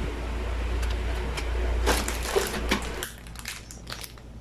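Plastic food-container lids clattering and scraping against each other as they are handled and sorted, over a steady low hum. The handling stops about three seconds in, leaving a quieter background with a few light clicks.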